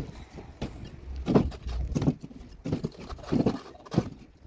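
Bricklaying work: a steel trowel scraping and tapping wet mortar and bricks in a string of short strokes, roughly one every half second to second.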